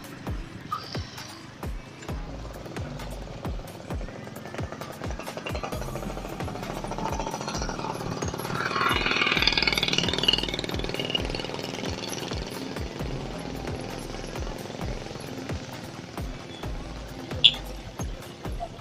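Background electronic music with a fast, steady beat and a shifting bass line, growing louder about eight seconds in and easing off again a few seconds later.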